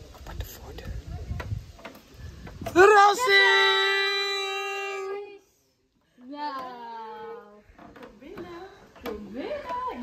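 Excited greeting voices. A loud, long held cry comes about three seconds in and slowly fades. After a short break there is a falling 'ooh' as the door opens, then the start of speech.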